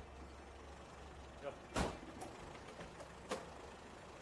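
A car door shutting with a single loud slam about two seconds in, over a low steady engine idle. A lighter knock follows about a second and a half later.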